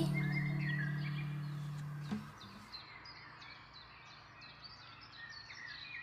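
The held closing chord of a gentle sung song's backing music fades out over about two seconds. Faint bird chirps follow: short falling notes repeated a few times a second.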